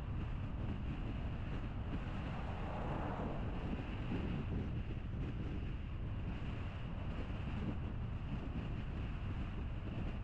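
Steady road and tyre noise from a car driving at street speed, a continuous low rumble with a slight swell about three seconds in.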